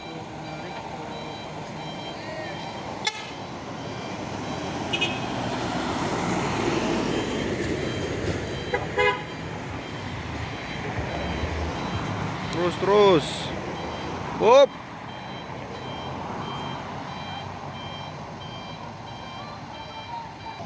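Mitsubishi Fuso dump truck's diesel engine running as the truck reverses slowly into position to tow, with the road noise swelling for several seconds around the middle as a car passes. Two short, loud shouted calls come near the end.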